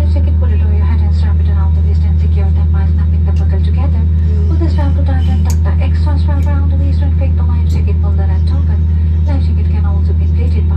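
Steady, loud low drone of an airliner cabin, with a voice talking over it throughout.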